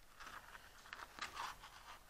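Faint handling noise of wooden beads strung on a thread: a few small clicks and rustles as they are moved in the fingers.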